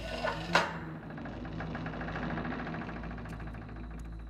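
Heavy wooden door being unlocked and opened: a sharp clunk of the lock about half a second in, then a long, rapidly pulsing creak as the door swings slowly open, over a low steady hum.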